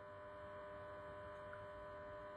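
Faint, steady electrical hum made of several fixed tones, with no other sound over it.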